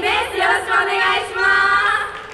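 Several young women's voices amplified through microphones, calling out together in a drawn-out, sing-song unison phrase that stops at the end, as in an idol group's group greeting.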